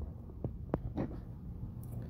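A pause in the talk: a low steady room hum, with three faint short clicks about half a second to a second in.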